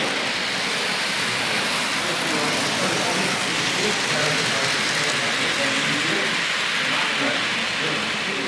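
Märklin HO-scale TEE railcar train (model 3471, RAm) running along the layout track, a steady noise of the motor and wheels on the rails, with people chatting in the background.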